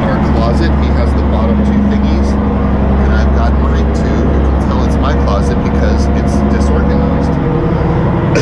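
Steady low drone of a long-range fishing boat's diesel engines heard below deck in a cabin, with small clicks and knocks scattered through it.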